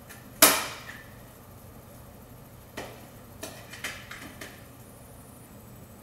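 Egg slicer snapped shut through a banana: one sharp clack about half a second in, then a few lighter clicks and knocks as the slices and slicer are handled on the cutting board.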